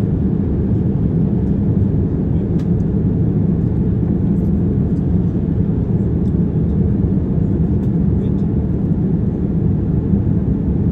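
Steady, deep cabin noise of a jet airliner in flight: the even drone of the engines and the rush of air past the fuselage, heard from a window seat. A few faint light clicks sit above it.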